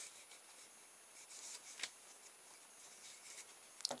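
Faint handling noise of rubber bands being stretched and fitted into a cardboard tube: a soft rustle about a second in, then a small click.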